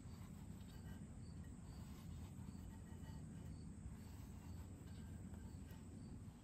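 Faint crickets chirping, short high chirps repeating about every half second, over a low steady rumble, with a few soft clicks.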